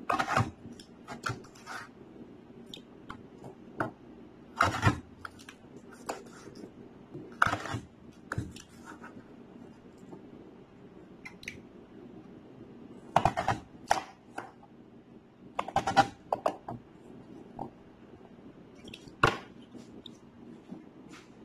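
Kitchen knife slicing through beetroot and knocking on a cutting board, in irregular strokes a few seconds apart, some short and sharp, some a brief scrape, over a faint steady hum.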